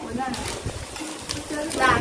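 People talking in the background, with short broken-up phrases, and a brief low, steady tone about a second in.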